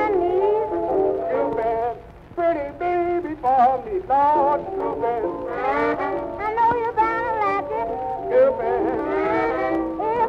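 Late-1920s jazz band record playing, its lead melody lines wavering with a strong vibrato. The music briefly drops in level about two seconds in.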